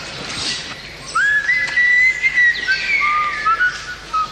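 A man whistling a slow tune of long, gliding notes, starting about a second in and stepping down in pitch toward the end.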